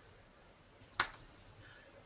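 A single sharp click about halfway through, against quiet room tone.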